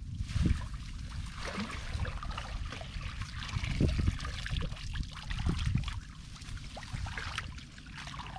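Shallow floodwater sloshing, trickling and dripping in irregular surges as a person wades through it and works a woven bamboo basket through the water.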